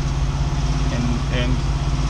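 Kenworth T680 semi-truck's diesel engine idling steadily, heard from inside the cab as a low, even throb.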